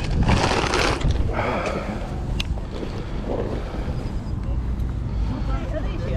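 Wind rumbling on the microphone, with scattered voices of people nearby and a brief rustling burst in the first second.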